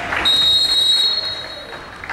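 Referee's whistle blown in one long, steady blast of about a second and a half, over fading crowd noise.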